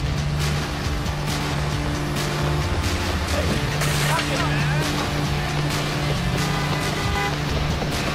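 A film action soundtrack: music with a steady low note, mixed with city traffic as cars drive past close by.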